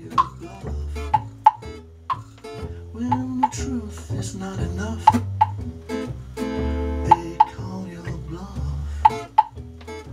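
A small live band playing an instrumental passage: acoustic guitar strumming over an upright double bass and a drum kit, with sharp drum hits cutting through.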